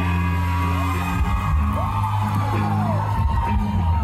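Live pop song played over a concert PA, with long held bass notes under the intro just before the vocals come in, and audience whoops rising and falling over the music.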